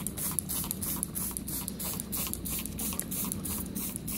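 Steady low electrical hum with a fast, even crackle of faint high ticks over it, typical of the homemade transformer-rectifier used for electrolytic cleaning of stainless steel.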